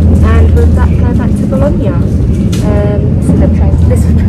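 A woman talking over the steady low rumble of a passenger train in motion, heard from inside the carriage.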